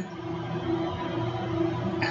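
Room tone in a pause between sentences: a steady hum at one pitch over a faint even hiss.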